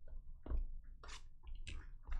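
Plastic shrink wrap on a trading card box crinkling and tearing as it is pulled off, in several short crackly bursts.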